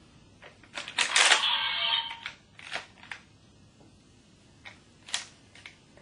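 Plastic clicks and clatter from handling a DX Ultra Z Riser toy and its parts: a loud burst of rattling about a second in, then a few separate sharp clicks.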